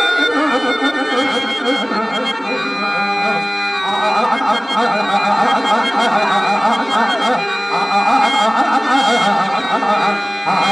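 A man singing a drawn-out, ornamented verse of Telugu stage drama into a microphone, with a harmonium sustaining notes underneath.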